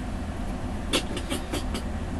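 Steady low background rumble, with a few faint short ticks about a second in.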